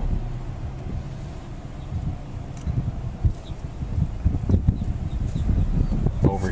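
Car running at low speed, heard from inside, with wind rumbling unevenly on the microphone.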